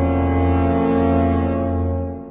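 A long, low, steady horn-like drone with a rich buzzy tone, a sound effect laid over the scene, beginning to fade near the end.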